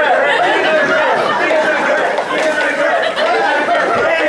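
A group of men chanting and shouting together in a mock haka, several voices overlapping.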